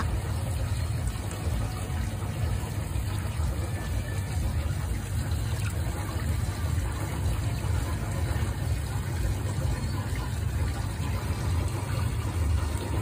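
Steady low rumble with a faint wash of running water from the otter pool.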